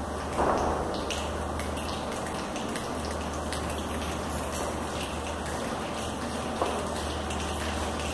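Rain sound for a stage piece: a steady hiss with many small scattered clicks like falling drops.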